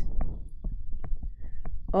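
Pen tip tapping and scratching on a tablet screen while handwriting numbers: a string of small, irregular clicks and taps with low thuds underneath.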